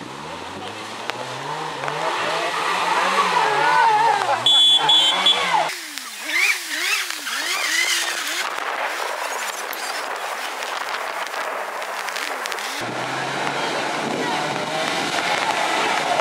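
Mk2 Volkswagen Golf rally car's engine revving, its pitch rising and falling again and again as the car runs off a gravel stage into the ditch. The sound changes abruptly twice, about six and thirteen seconds in.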